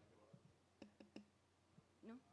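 Near silence: room tone with three faint, quick clicks a little under a second in.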